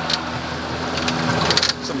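A Yamaha jet boat's engine runs with a steady hum under the rush of water, with a few light clicks about one and a half seconds in.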